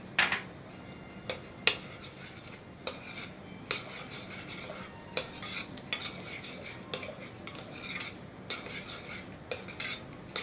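Metal spoon stirring a thick mayonnaise dressing in a glass mixing bowl, clinking irregularly against the glass, with the loudest clinks in the first two seconds. Softer wet scraping runs between the clinks in the second half.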